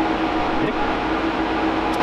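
Cooling fans of rack-mounted servers running steadily: an even whir with a steady hum.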